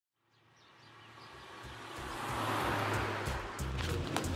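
Outdoor street ambience with traffic fading in out of silence. A general hiss and low rumble grow steadily louder over the first two seconds or so, and a few small clicks come near the end.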